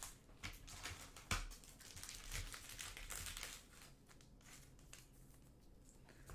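Trading cards being handled on a tabletop: faint rustling and light clicks, busiest in the first few seconds and thinning out after.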